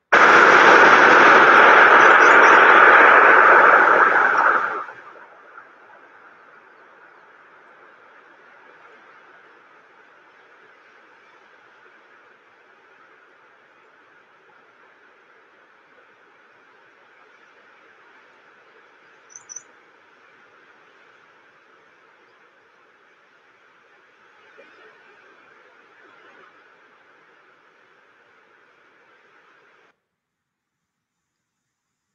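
Outdoor ambience from the soundtrack of a video artwork played over a screen share: a loud burst of rushing noise for the first four to five seconds, then faint steady background noise with a brief high chirp about two-thirds of the way in.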